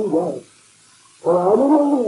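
A man lecturing in Urdu: a few words, a pause of under a second, then a drawn-out voiced syllable as speech resumes.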